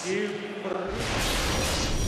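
A TV broadcast's league ident sting: a brief voice, then about a second in a sudden, loud whooshing sound with deep bass and music that carries on.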